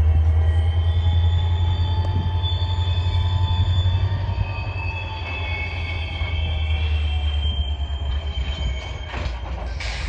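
Freight cars rolling slowly through a hump yard, their steel wheels squealing in several high, slowly wavering tones over a heavy low rumble. A couple of short sharp noises come near the end.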